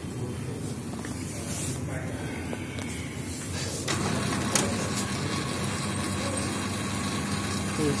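Kyocera desktop laser printer starting up: about four seconds in, a steady motor hum with a thin high whine begins and runs on, with a few sharp clicks.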